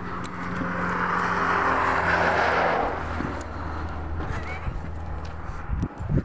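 A motor vehicle passing nearby: a steady low engine hum, with noise that swells to a peak a little over two seconds in and then fades.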